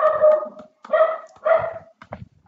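Three steady-pitched animal calls: a long one, then two shorter ones about a second and a second and a half in.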